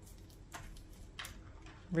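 A few faint light taps, about half a second and a second in, from a plastic stylus and hands on a toy drawing tablet in its plastic packaging; a voice starts right at the end.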